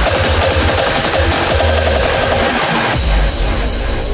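Raw hardstyle dance music: hard distorted kick drums under a synth melody. About three seconds in the kicks stop and the track drops into held low notes with the top end cut away.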